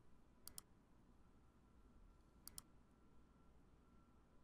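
Two faint computer mouse clicks about two seconds apart, each a quick press-and-release double tick, as items are clicked in a software menu.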